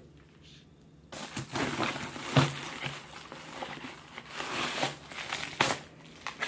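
Plastic mailer bag and paper packaging rustling and crinkling as the contents are pulled out, with a few light knocks of items being handled; it starts about a second in.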